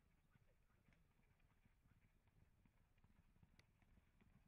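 Near silence, with faint, irregular hoofbeats of a horse galloping on grass and one small click near the end.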